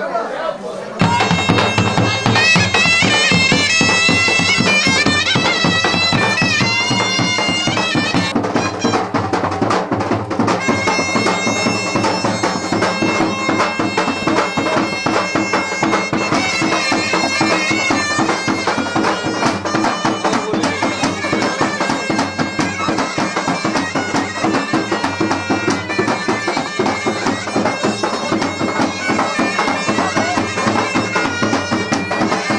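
Bulgarian gaida (bagpipe) playing a folk tune, its melody moving over a steady low drone. It starts suddenly about a second in and plays on without a break.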